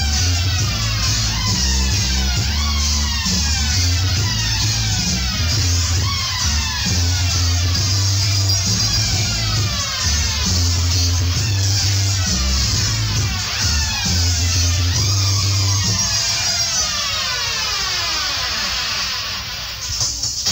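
Reggae played on a sound system: a heavy bass line with falling pitch sweeps laid over it every second or two, the longest one sliding far down near the end.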